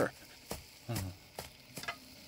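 A metal ladle clinking and scraping in a frying pan of food: a few sharp short clicks, one about half a second in and a quick cluster near the end.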